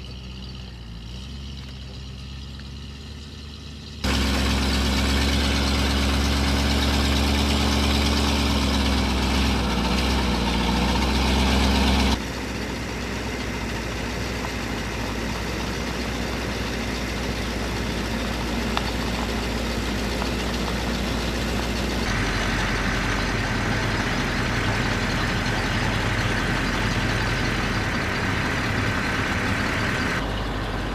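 Utility bucket truck's engine running as the truck drives slowly, in several spliced clips that change abruptly: quieter for the first few seconds, much louder from about four seconds in with a pitch that dips near ten seconds, then steadier from about twelve seconds on, with a faint steady whine in the last part.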